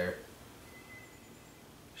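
Quiet background hiss with one faint, thin high tone lasting about half a second near the middle.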